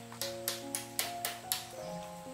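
Background music: a melody of held notes over a light ticking beat, about four ticks a second.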